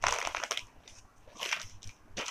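Rustling of a folded silk saree being unfolded and spread out by hand, in two bursts: one at the start and another about a second and a half in.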